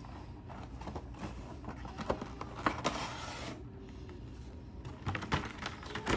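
Funko Pop cardboard box and its clear plastic insert being handled as the box is opened and the figure slid out: scattered small clicks and taps, with a stretch of rustling about three seconds in.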